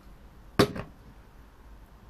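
A single sharp knock about half a second in, with a fainter one just after, as the opened aluminium energy-drink can is picked up to drink.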